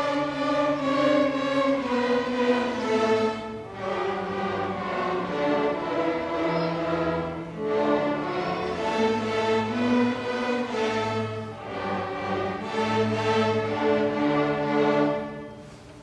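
A beginner string orchestra of violins, violas and cellos plays a simple piece built on the major scale in bowed quarter notes. Its phrases break briefly about every four seconds. The music ends about a second before the close.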